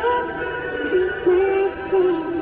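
A person singing a slow melody in long held notes, stepping between pitches.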